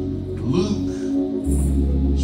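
Church organ holding soft, sustained chords, with a deep bass note coming in about one and a half seconds in.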